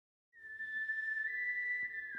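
A whistled melody opening a song's recording: one long, high, steady note that starts a moment in and steps slightly higher about a second later.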